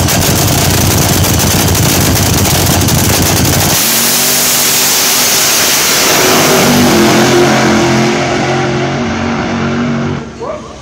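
Nitro-burning supercharged Hemi of an AA/FC funny car: a loud, rough crackling idle, then about four seconds in the car launches on a soft test pass. The engine note turns pitched and rises slightly, then fades toward the end as the car runs away down the track.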